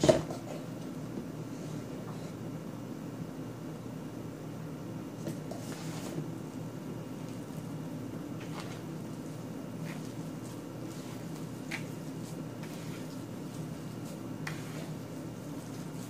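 Hands kneading and squishing a soft mashed-potato and flour dough in a metal baking pan, with a few faint light taps, over a steady low background noise. A sharp knock at the very start.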